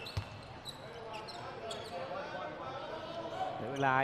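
Indoor basketball arena ambience: a low crowd murmur in a large hall, with a single low thud of a basketball bouncing on the hardwood floor just after the start.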